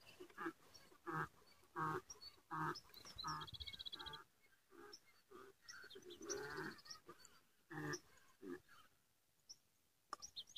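A donkey braying faintly, a series of short pitched calls repeated about once a second that trail off near the end. A bird gives two short high trills in between, near the middle of the run.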